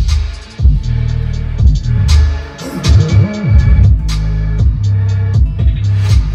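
Music with a heavy bass line played loud through a Tesla Model 3 SR+ stereo fitted with a Hansshow audio upgrade: added pillar, corner and rear-deck speakers, an amplifier and a trunk subwoofer. It is heard inside the cabin, and the level dips briefly about half a second in.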